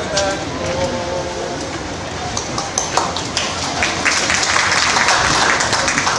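A held sung note from a male barbershop lead line fades out in the first moment, then an audience claps, the clapping growing from about two and a half seconds in.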